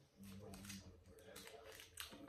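Faint crinkling and rustling of a Tootsie Roll's waxed-paper wrapper being picked apart by hand, with a brief low hum in the first half second.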